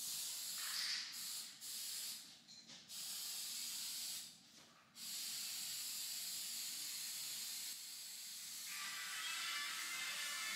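Aerosol spray paint can hissing in short bursts of about a second, broken by brief pauses, then a longer steady spray.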